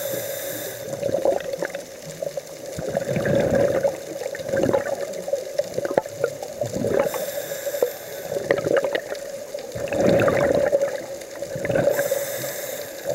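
A scuba diver's regulator breathing underwater: a hissing inhalation at the start and another about seven seconds in, with gurgling, bubbling exhalations in between. A steady hum runs underneath.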